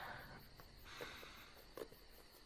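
Near silence: quiet room tone with a soft breath about a second in and a few faint clicks.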